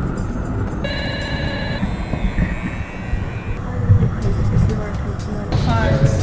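Rumble of city street traffic, with a short steady tone about a second in and voices starting near the end.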